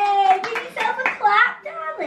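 A few people clapping briefly, mixed with excited voices including a child's, as a sung note ends about half a second in.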